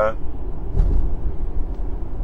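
A low, steady rumble like a vehicle running, swelling briefly about a second in, as a man's voice trails off at the very start.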